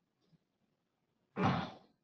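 Near silence, then a single audible breath into the presenter's microphone a little past halfway through, as he pauses between sentences.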